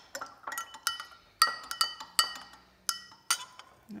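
Metal spoon stirring water in a drinking glass, clinking against the glass wall about a dozen times at an uneven pace, each clink ringing briefly.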